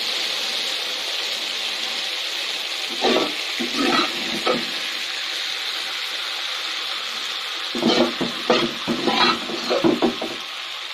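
A teler pitha (rice-flour batter cake) deep-frying in oil in a cast-iron kadai, sizzling steadily. Two clusters of louder short sounds break in, about three seconds in and again near the end.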